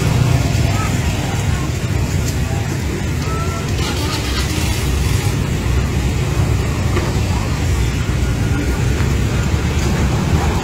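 Busy street-market ambience: a steady low rumble under indistinct voices of people nearby, with no clear words.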